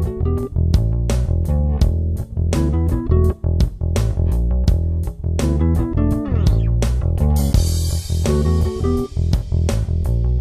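Background music with bass and guitar over a steady beat, with a rising sweep and a hissy wash partway through.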